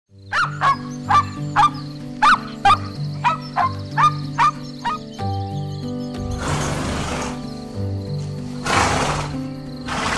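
A puppy yipping: about a dozen short, sharp yips, two or three a second, over the first five seconds. Then a horse makes two longer noisy bursts, about two and a half seconds apart. Background music with steady held notes plays underneath throughout.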